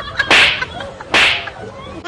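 Two whip-crack sound effects, the first about a third of a second in and the second a little over a second in, each a short sharp crack. They are comedy hit effects laid over the slapstick blows.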